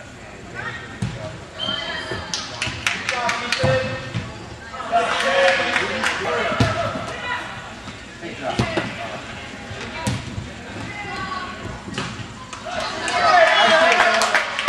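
Futsal ball being kicked and bouncing on an indoor court, a string of short sharp knocks, mixed with indistinct shouting and chatter from players and spectators that gets louder around the middle and again near the end.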